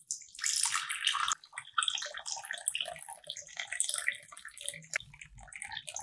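Water poured in a stream into a ceramic teacup holding a tea bag, splashing and filling the cup. It starts abruptly and is loudest over the first second or so.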